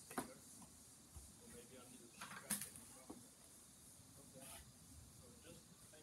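Near silence, with a few faint clicks or knocks: one just after the start and the loudest about two and a half seconds in.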